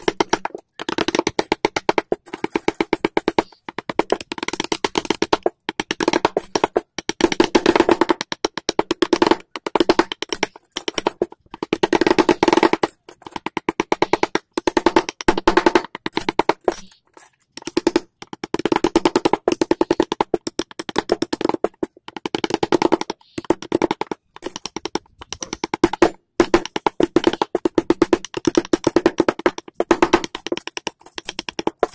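A carving chisel being struck into a hardwood door panel in rapid runs of sharp taps, several a second, broken by short uneven pauses.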